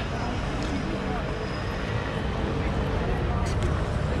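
City street ambience in an open square: a steady low rumble with faint voices of passersby and a couple of short clicks.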